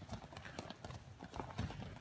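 Quick, irregular footsteps and thumps of two wrestlers' feet on a wrestling mat as one drives a takedown shot into the other.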